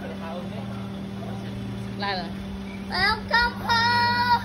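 A car engine idling steadily with a low hum. About two seconds in, and again from about three seconds in, a high-pitched voice calls out in long held notes that fall in pitch at the end.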